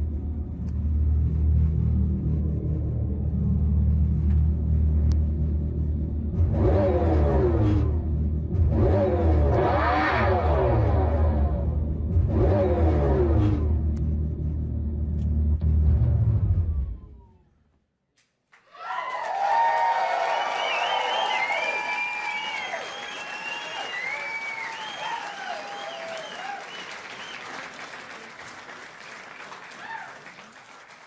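The electric Dodge Charger Daytona SRT concept's synthesized exhaust sound: a deep, steady rumble with three rev sweeps that rise and fall. It cuts off suddenly and, after a moment's silence, a crowd cheers, applauds and whistles.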